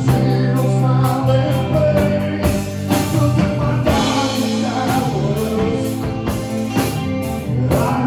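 Live rock band playing: a singer's vocals over electric guitar, bass guitar and drums, loud and continuous with a steady drum beat.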